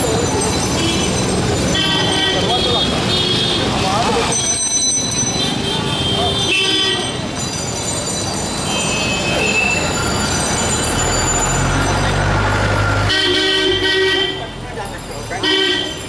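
Night street traffic: motorbike and vehicle horns honking again and again, with the longest honks near the end, over crowd chatter and engine noise.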